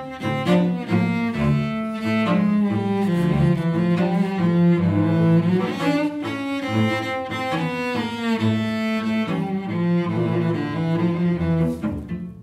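Two cellos playing a tango duet with the bow, with long held low notes under a moving melodic line.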